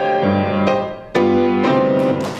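Grand piano playing the closing chords of a romance accompaniment after the voice has stopped: three chords, the loudest struck just after a brief die-away about a second in.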